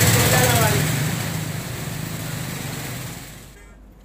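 Street traffic in floodwater: a car's engine and the rush and splash of water, with voices in the background. It fades over the first few seconds and drops away shortly before the end.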